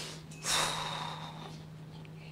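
A person sniffing or breathing in sharply through the nose near a microphone, twice: a short one at first, then a louder one about half a second in that carries a thin whistle for about a second as it fades.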